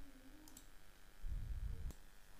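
Faint computer mouse clicks over quiet room noise: a light click about half a second in and a sharper one just before the end, with a brief low rumble before the second click.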